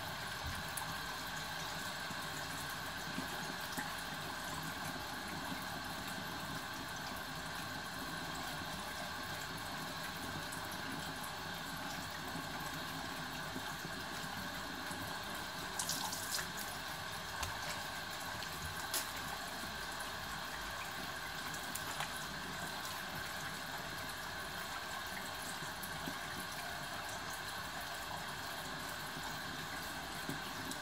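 Kitchen faucet running steadily into a sink, with a few short splashes about halfway through as hands go under the stream.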